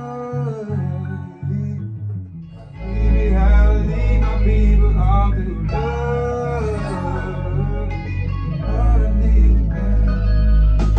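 A man singing a melody along with a guitar-led beat playing through studio monitors, working out the chorus by ear. Deep bass in the beat comes in about three seconds in.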